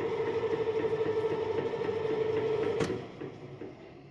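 Spiral dough mixer running with an empty bowl, a steady mechanical hum with a fast, even pulsing. About three seconds in, a sharp click as it is switched off, and the machine winds down.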